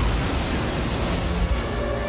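Film soundtrack of a shark attack: a steady noise of churning, splashing water with a low rumble, under orchestral score music whose notes come forward near the end.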